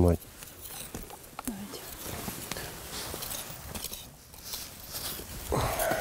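Quiet rustling and shuffling of people moving on leaf-littered forest ground, with a few light clicks.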